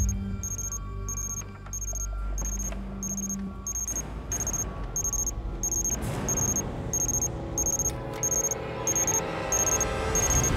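Tense background music with a repeated high electronic beep, about three beeps every two seconds: the motion-activated camera's alarm going off.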